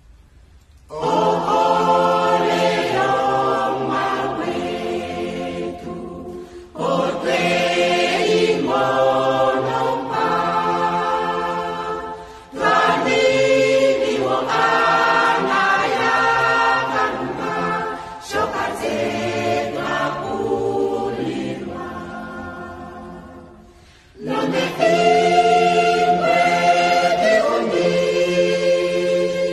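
A choir singing an Oshiwambo gospel song in harmony. It comes in about a second in and sings five phrases of five to six seconds each, with short breaks between them.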